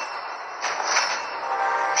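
Dramatic TV-serial sound effect: swelling whooshes of noise, one after another, over a sustained music tone that grows clearer near the end.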